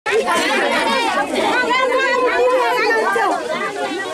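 A group of women talking over one another: steady overlapping chatter of several voices at once.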